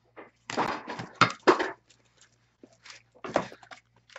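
Cardboard trading-card boxes and cards being handled: several short bursts of rustling and sliding, with knocks, in two clusters, one early and one a little over three seconds in.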